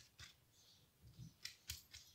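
A handful of faint, sharp clicks and taps, the loudest in the second half: a silicone pastry brush knocking against a ceramic bowl as it is dipped in melted butter and oil and dabbed onto filo pastry sheets.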